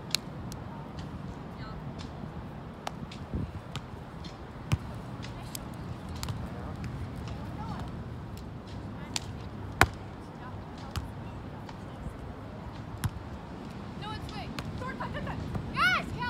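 Sharp ball impacts on a hard court at irregular intervals, a second or several apart, over a steady background of voices. Near the end comes a cluster of high squeaks from shoes on the court.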